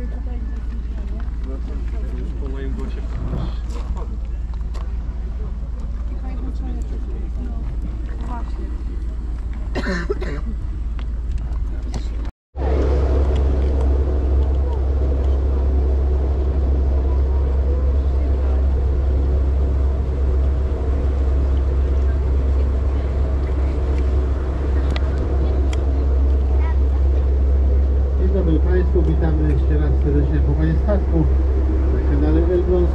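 Indistinct voices over a steady low rumble; after an abrupt cut about twelve seconds in, the louder steady drone of a tour boat's engine with several held tones.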